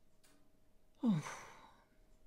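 A woman's breathy, sighed "Oh" about a second in, falling in pitch and trailing off.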